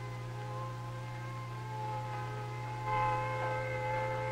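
Civil defense siren sounding a steady alert tone, faint at first and louder from about three seconds in, over a low steady hum.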